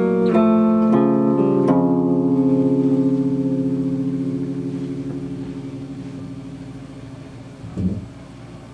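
Electric guitar played alone: a quick run of picked notes and chords, then a chord left to ring and fade slowly, its level wavering fast and evenly. A short low thump comes near the end.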